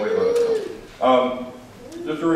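A man speaking: a long drawn-out syllable at the start, then a few quick words about a second in.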